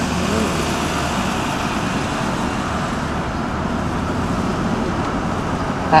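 Steady road and engine noise of a car driving, heard from inside its cabin.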